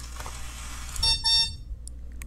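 A click as the release button on the Cozy Cone toy alarm clock is held down, then about a second in a short electronic sound effect from the toy's speaker: two quick buzzy beeps.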